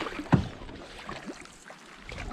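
Canoe paddle strokes swishing through lake water, with one sharp knock about a third of a second in, the loudest moment.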